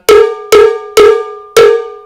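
Large mambo cowbell, held in the hand, struck four times on its outer edge with the shoulder of a drumstick, about two strikes a second. Each hit rings with a clear metallic tone that fades before the next.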